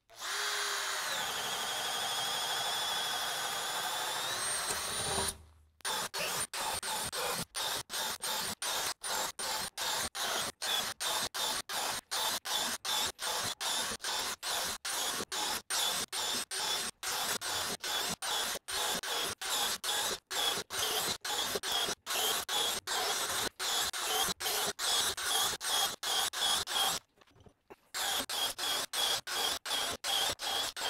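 Cordless compact drill boring a 1-inch auger bit through pine, run in its low-speed, high-torque setting. The motor whines steadily, its pitch sagging under load and then picking back up. After about five seconds the drilling comes in a rapid string of short bursts, two to three a second, each broken off abruptly, with one longer pause near the end.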